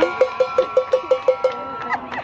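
A cowbell shaken rapidly, about six clanks a second, stopping shortly before the end, with a steady high tone held underneath.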